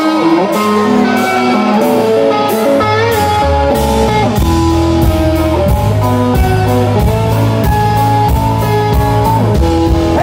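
Live rock band playing, led by an electric guitar over drums. The low end fills out about three seconds in.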